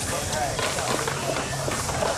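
Spectators chatting close by over the rolling of skateboard wheels on a concrete bowl, with a few faint clicks.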